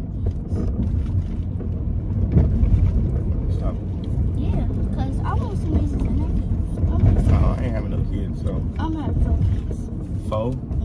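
Steady low rumble of a car's engine and tyres heard from inside the cabin of the moving car, with indistinct voices over it.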